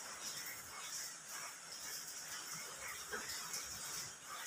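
Rain falling steadily, a soft even hiss.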